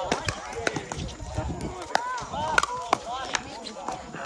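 Pickleball paddles hitting a hollow plastic ball during a rally: several sharp pops at uneven intervals.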